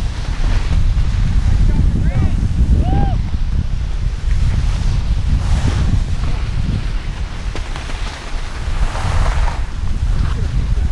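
Wind buffeting an action camera's microphone while skiing downhill, a steady low rumble, with the hiss and scrape of skis sliding and turning on snow swelling about halfway through and again near the end.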